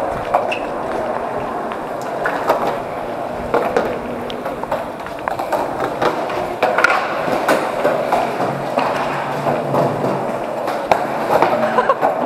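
Skateboard and inline skate wheels rolling on a smooth concrete walkway: a steady rolling rumble with scattered clicks and knocks.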